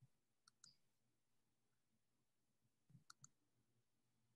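Near silence, broken by a few faint short clicks: two about half a second in and three in quick succession about three seconds in.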